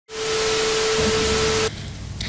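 Loud, even static hiss with a single steady tone running through it and a low rumble joining about a second in. It cuts off suddenly shortly before the end.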